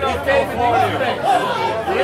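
Speech only: a man talking over a PA microphone, with other people chattering.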